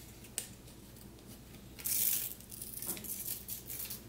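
Paper-backed iron-on hem tape being pulled off its roll and laid along a sweater hem: a short, quiet tearing rustle about two seconds in, with a single click near the start and lighter rustles of tape and knit fabric after it.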